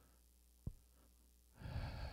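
Near silence with one small click about two-thirds of a second in. Near the end, a man takes a sighing breath close to a handheld microphone.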